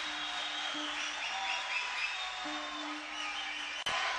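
Live concert audience noise between songs, with short whistles over a steady low note held from the stage that stops and starts again. The sound cuts out for an instant near the end.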